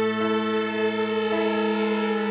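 A string quartet plays slow, held chords. The upper notes change about a quarter of a second in and again partway through.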